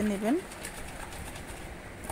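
A woman's voice finishes a word with a rising tone. Then comes faint handling noise with a few soft ticks as koi fish pieces are turned in turmeric and salt in a plastic bowl.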